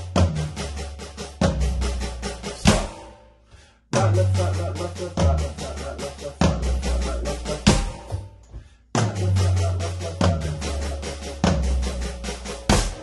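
Roland electronic drum kit played with sticks: three phrases of quick, even paradiddle-diddle strokes around the tom pads, each opening with a deep low drum sound and ending on one loud accented hit, with a short pause between phrases.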